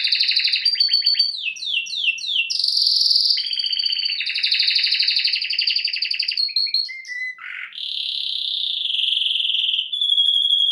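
Domestic canary singing a long, unbroken song of fast trills, with a run of quick downward-sliding notes about two seconds in and a long held note near the end.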